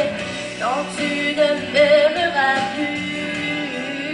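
A woman singing live into a microphone over a backing track, holding long notes and sliding between them with no clear words.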